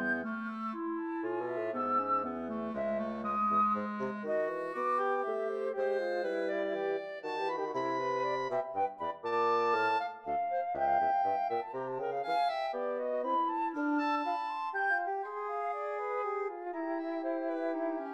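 Contemporary chamber music for a woodwind trio of flute, clarinet and bassoon, several melodic lines weaving against one another over a low bass line.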